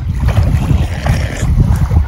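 Wind buffeting the microphone: a loud, uneven low rumble, with small waves lapping faintly at the shoreline.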